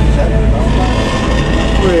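Steady, low engine drone and road noise heard from inside a bus cabin at highway speed, with short bursts of voices over it.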